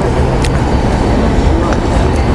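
Steady low rumble with a hiss over it: outdoor city background noise, like road traffic, with a faint tick about half a second in.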